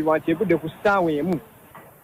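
A voice speaking a short phrase of news narration, which stops about a second and a half in and leaves a brief pause.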